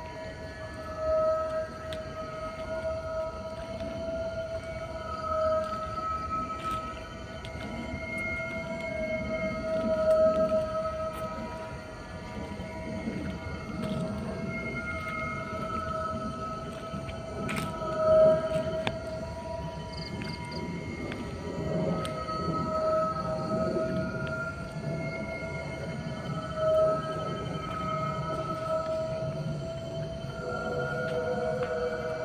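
Eerie background music: a sustained droning tone with slow, swelling notes above it and a few louder swells.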